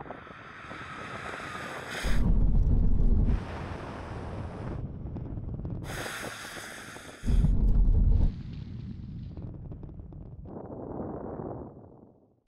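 Toyota GR86, GT86 and AE86 braking hard from speed on a wet runway: tyres hissing on the wet tarmac under engine noise. Two loud gusts of wind buffet the microphone, about two and seven seconds in.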